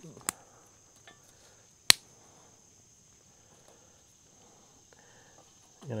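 Crickets trilling steadily at a high pitch, with two sharp pops from wood burning in a small camp stove, the louder one about two seconds in.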